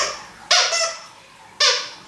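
Squeaker inside a plush dragon dog toy squeezed twice, about a second apart, each high squeak starting sharply and tailing off.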